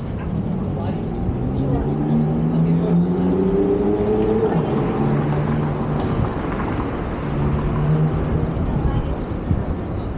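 A motor vehicle's engine humming in city street noise, rising in pitch about two to four seconds in as it speeds up.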